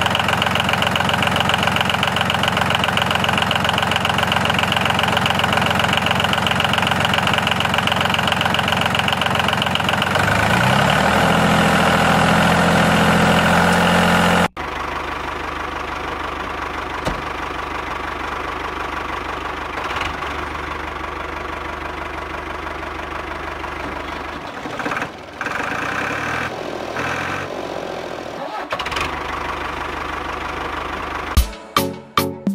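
A tractor engine running steadily, its pitch rising about eleven seconds in. It cuts off abruptly about fourteen and a half seconds in, and a quieter, steady engine-like sound follows, with a few knocks near the end.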